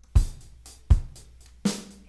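A drum kit in a recorded rock track playing back: three separate hits about three-quarters of a second apart, each a low kick under a bright cymbal wash that fades between strokes.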